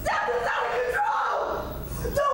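A woman screaming and shouting in rage and anguish, her voice high and strained, the cries rising and falling.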